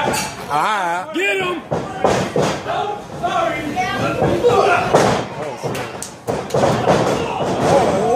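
Wrestlers' bodies slamming onto the wrestling ring's canvas several times, thuds that shake the ring, mixed with spectators shouting and yelling.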